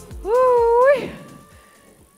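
The workout music's beat stops, and a single high, drawn-out voice holds one note for under a second, rising slightly at the end. A faint steady tone lingers after it.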